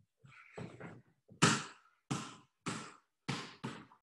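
A basketball being dribbled on the floor underneath the legs of a person holding a wall sit: a run of about six bounces, roughly one every two-thirds of a second, the second the loudest.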